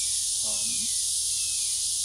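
Steady, high-pitched insect chorus, an even hiss that never lets up. A man says a short 'um' about half a second in.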